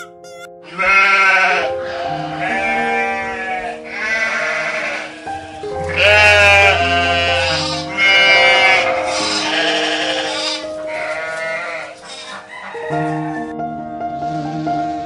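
Sheep bleating: a series of about seven loud, wavering bleats, roughly one every second and a half, over soft background music with held notes.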